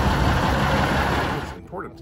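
Fire truck engine running loudly just after being started, a dense rumble that cuts off suddenly about three-quarters of the way through.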